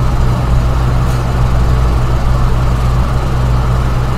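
A steady low hum with a soft hiss over it, unchanging throughout.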